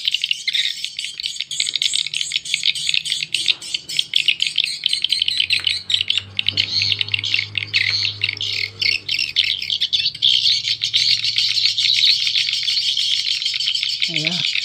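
Recorded swiftlet calls played through a pair of horn tweeters from a two-channel swiftlet-house amplifier, with two different call tracks running at once on the left and right channels: a loud, dense, continuous stream of high, rapid chirps and twitters.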